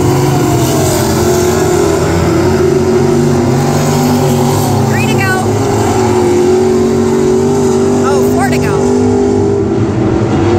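Several stock car engines running together at racing speed, a loud, steady drone of overlapping engine notes with no break.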